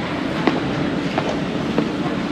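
Steady rumbling background noise of a large indoor arena, with light footsteps about two-thirds of a second apart.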